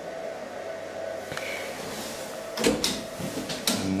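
NAMI Namihissen 400 platform lift running with a steady hum, with a small click about one and a half seconds in and a couple of clunks a little later and near the end.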